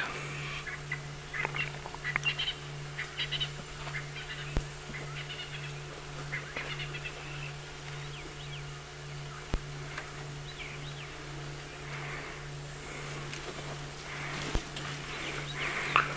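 Scattered short bird chirps and calls over a steady, faintly pulsing low hum, with a few single faint clicks.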